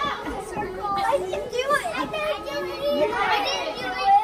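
Young children's voices, many at once, shouting, squealing and chattering excitedly as they play.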